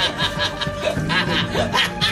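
Men laughing mockingly in quick repeated bursts, over background score music.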